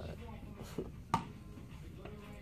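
Indistinct background voices, with one short, sharp sound a little past a second in.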